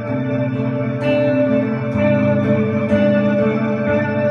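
Ambient electric guitar played through effects pedals, with looped layers of sustained notes under reverb and echo. New picked notes come in about once a second over the held drone of a slow, creepy riff.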